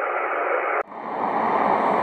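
Steady radio receiver hiss on the 10-metre band in single sideband, with no station coming through between transmissions. It drops out abruptly under a second in, then resumes as a slightly brighter, wider hiss from a second receiver.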